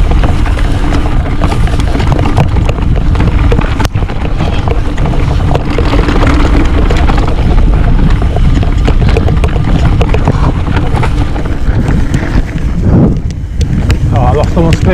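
Wind buffeting an action camera's microphone while a Trek Remedy full-suspension mountain bike descends a dirt singletrack at speed. Tyres rumble on the dirt and the bike rattles and knocks over rough ground, easing briefly near the end.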